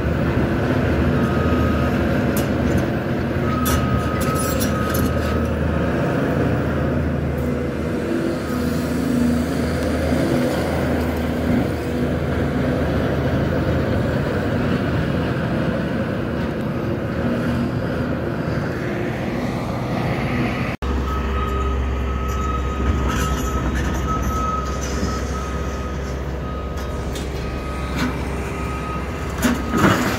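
Caterpillar tracked excavator's diesel engine running steadily with a thin high whine, while brick and metal demolition debris clanks and crunches now and then. The sound drops out for an instant about two-thirds through, and near the end louder crashes come as debris is dropped into a dump trailer.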